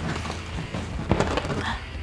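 A large hollow paper-mâché pumpkin shell being handled and set down on a wooden workbench: a few light knocks and rustles of the stiff paper.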